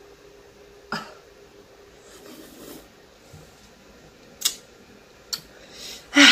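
Person sucking on a hard-candy lollipop: a few short, sharp mouth clicks or smacks, one about a second in and two near the end, with a soft breath between.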